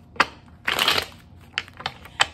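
A deck of tarot cards being shuffled by hand: a sharp tap, then a brief rush of cards lasting about half a second, then a couple of light taps near the end.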